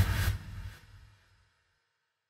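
Tail of a whoosh sound effect with a low rumble, fading out within the first second and leaving silence for the rest.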